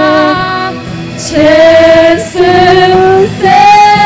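Female vocalists singing a worship song in long held notes, with a short dip between phrases about a second in.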